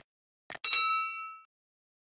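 Subscribe-button animation sound effects: a short mouse click about half a second in, then a bright notification-style ding that rings out and fades within a second.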